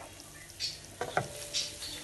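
Shell pasta with prawns and a creamy mushroom sauce sizzling gently in a frying pan over a lowered gas flame while it is stirred and tossed, with a few soft scrapes about halfway through.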